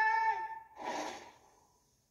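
An animated film character's voice from a trailer playing on a television: a short held vocal note, then a breathy exhale about a second in that trails off.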